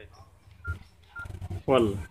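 Key-press beeps from a Samsung B310E keypad phone: two short single-pitch beeps about half a second apart as its keys are pressed to tick menu options.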